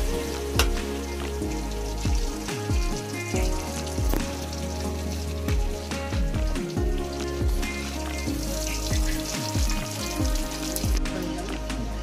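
Background music with sustained notes over a deep, repeating bass, with a faint hiss running under it.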